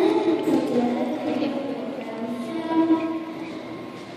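A child singing into a handheld microphone, in long held notes that step up and down in pitch.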